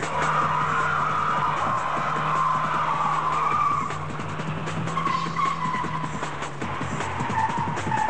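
Car tyres squealing as a saloon car spins doughnuts on tarmac, the squeal wavering in pitch and running almost without a break, over the car's engine, with music playing.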